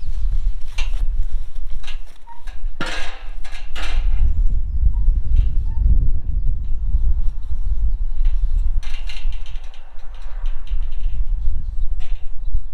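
Tubular steel farm gate rattling and clanking as it is handled, with a cluster of sharp knocks about three seconds in and more clatter near nine seconds, over a steady low rumble.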